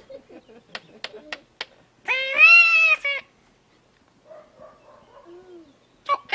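A few sharp clicks, then, about two seconds in, a single loud, high-pitched animal-like cry lasting about a second that rises and then falls. Faint low murmurs follow.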